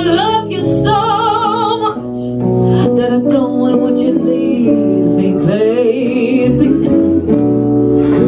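Live gypsy jazz: a woman singing with two long held notes with vibrato, over two guitars and a double bass.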